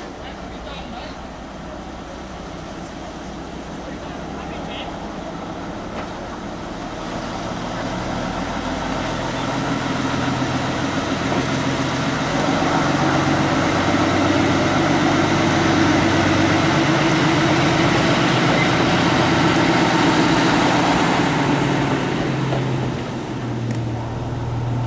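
Drewry 2591 diesel shunter running slowly past with a brake van. Its engine sound grows steadily louder as it approaches, holds at its loudest through the middle, and eases a little near the end as it goes by.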